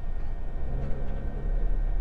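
Low rumble of a TV news truck's engine and road noise heard inside the cab while it drives slowly, with a steady low hum rising for a moment about a second in.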